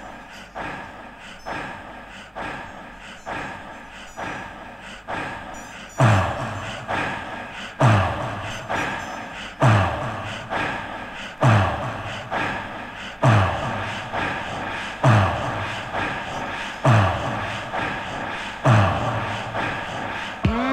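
Instrumental intro of a 1980s home-recorded electronic track: a Roland TR-808 drum machine pattern, joined about six seconds in by a deep kick from a Yamaha CS5 synth, a low thud that drops in pitch and repeats about every two seconds.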